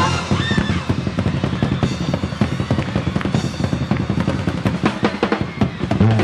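Live concert band music: the drum kit plays a fast, rolling run of beats with cymbals, following a sustained orchestral chord.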